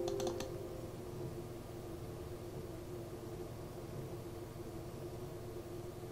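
A quick run of computer mouse clicks, a double-click opening a folder, in the first half second, then only a faint steady hum.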